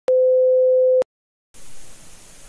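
A test-card tone: one steady pure beep lasting about a second, clicking on and off. Brief silence follows, then a hiss comes in near the end.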